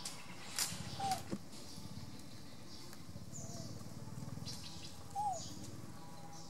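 Birds giving short falling chirps several times over a steady low background hum, with a few sharp clicks near the start.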